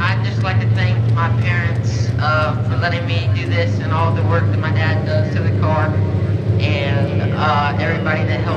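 People talking over a steady low engine hum, like a race car engine idling.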